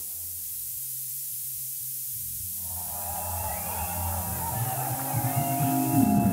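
Techno track in a breakdown: the drums drop out, leaving a low held bass tone under a hiss of white noise. About two and a half seconds in, synth tones fade in and the music builds, louder toward the end, until the full beat returns.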